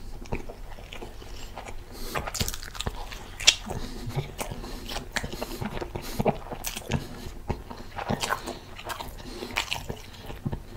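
Close-miked biting and chewing of a turkey cheeseburger in a soft bun dipped in red sauce: a steady string of short mouth clicks and chews, the sharpest about three and a half seconds in.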